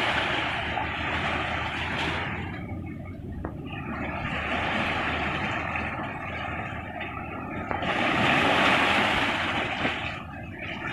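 Sea waves washing in over shoreline rocks and draining back through them, the rush of water swelling and easing in three surges: at the start, in the middle and near the end.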